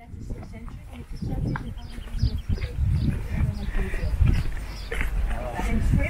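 Background chatter of nearby tourists outdoors, faint and indistinct, over low irregular thumps and rumble.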